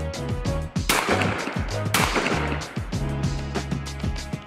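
Two shots from a Stevens 555 12-gauge over-under shotgun, about a second apart, each ringing out briefly, over background music.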